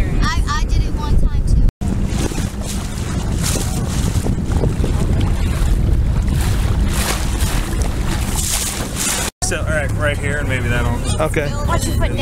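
Motorboat engine running steadily, with wind buffeting the microphone. The sound drops out suddenly twice, once about two seconds in and again near the end.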